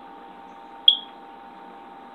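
A single short, high electronic beep about a second in, over a steady background hum.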